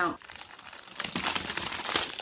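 A clear plastic sleeve crinkling as hands handle it. The crackle starts about halfway in.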